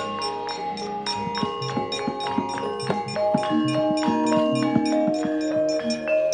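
Javanese gamelan accompanying wayang kulit, playing an instrumental passage: struck metallophones ringing in many overlapping tones, with frequent short strokes.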